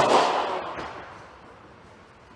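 Sharp crack of a padel ball struck hard with a racket on an overhead smash, followed by a noisy tail that fades away over about a second and a half.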